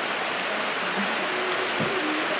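Steady, even hiss of heavy rain on the shop building's roof.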